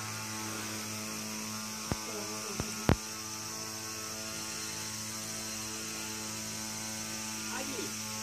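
A steady low electrical-sounding hum, with a few sharp clicks about two to three seconds in, the last of them the loudest.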